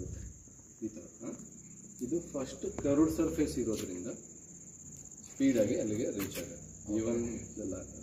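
Steady high-pitched cricket trill running on without a break, under a man talking in bursts.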